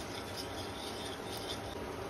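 Small wire whisk mashing cooked dal in a pressure cooker pot, its metal wires scraping and rubbing against the pot.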